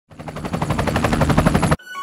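A rapid rattle of sharp hits, about a dozen a second, growing louder for under two seconds and then cutting off suddenly.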